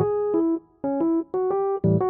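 Background music: a gentle keyboard tune in an electric-piano sound, separate notes and chords with a short pause near the middle.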